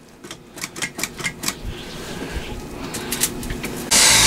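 A run of light, irregular clicks and taps, bunched near the start and again about three seconds in, with a few soft low thumps under them.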